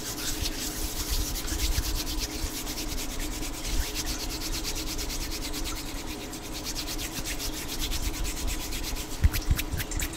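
Bare hands rubbing together right up against a condenser microphone: a quick, continuous run of dry skin-on-skin swishes, with one louder hit near the end.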